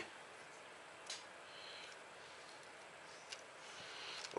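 Quiet handling noise as silicone fusion tape is stretched and wrapped around a carbon-fibre quadcopter arm, with two faint clicks, one about a second in and one past three seconds.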